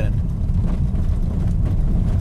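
Steady low rumble of low-profile 19-inch tyres rolling over a brick-paved road, heard inside the car's cabin. This is the noise the brick pavers still make through the stiff, lowered setup even with the BC coilovers on their softest damping.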